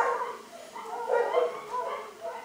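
A shaggy dog giving short, high, wavering whines from about a second in.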